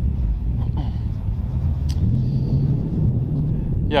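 Wind buffeting the microphone: a steady low rumble, with a short click about two seconds in.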